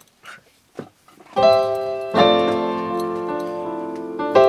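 Keyboard playing piano chords to open the song: after a few faint short noises, a chord comes in about a second and a half in, then a fuller chord is struck and left to ring, slowly fading.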